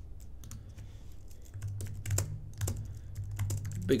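Typing on a computer keyboard: a string of irregular key clicks as a short phrase is typed, over a low steady hum.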